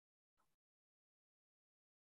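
Near silence, broken only by one very faint, brief blip about half a second in.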